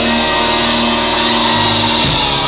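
Rock band playing live through a club PA, an instrumental passage of sustained, distorted electric guitar chords over drums, loud enough to overload the recording. The chords change near the end.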